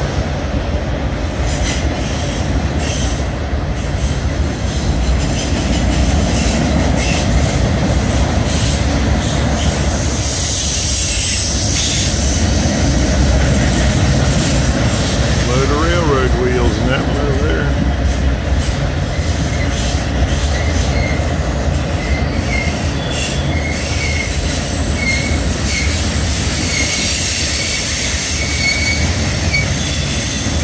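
Two freight trains passing each other at close range, their cars rolling by with a loud, steady rumble of wheels on rail. Short, faint, high-pitched wheel squeals come in during the second half.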